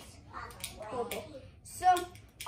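Quiet child's voice, with a few sharp clicks from hands working a small plastic fidget toy; a louder bit of voice near the end.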